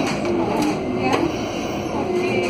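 Cabin noise inside an Alstom Aptis battery-electric bus on the move: a steady rolling and road rumble, with faint passenger voices.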